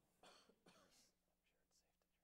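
Near silence with two short, faint bursts of low-voiced or whispered speech in the first second.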